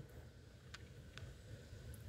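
Near silence: faint low background noise with two faint clicks in the middle.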